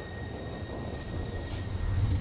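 A low rumbling whoosh, like air rushing, that swells toward the end. A faint high steady tone fades out about one and a half seconds in.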